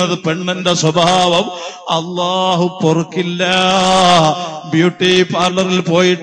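A man's voice chanting in a melodic recitation style, drawing out long held notes with slow bends in pitch, the longest held for about a second midway.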